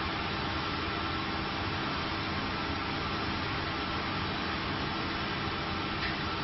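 Injection moulding machine running during a preform mould trial: a steady machine hum and hiss with a faint high tone held throughout, without distinct strokes or changes.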